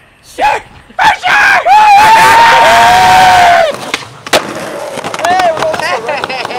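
Young men yelling in celebration of a landed skateboard trick: a long, loud held shout with two voices together for about two and a half seconds. A single sharp knock follows.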